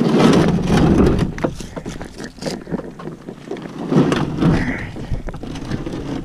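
A plastic kayak is shifted by hand on rough dirt ground, with the hull scraping and knocking. It is loudest in the first second and again about four seconds in, with some wind on the microphone.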